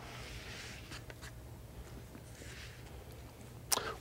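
Quiet lecture-room tone: a steady low hum with a few faint taps and soft rustles.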